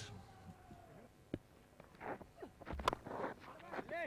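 Quiet cricket-ground ambience with faint distant voices, and one sharp crack of a cricket bat striking the ball about three seconds in.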